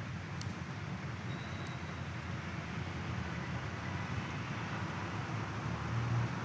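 Steady background noise: a low hum with an even hiss over it, and a couple of faint clicks in the first two seconds.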